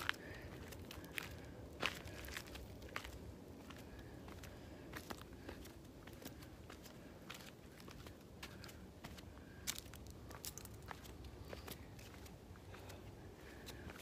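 Footsteps going down a steep stone-paved trail: faint, irregular scuffs and crunches of shoes on rock and loose grit, about one or two steps a second.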